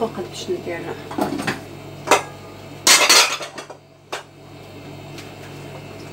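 Metal pots and utensils clinking and clattering at the stove, with a loud clatter lasting about half a second about three seconds in.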